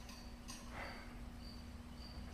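Faint insect chirping, short high chirps repeating about once a second, over a steady low hum, with a light click about half a second in.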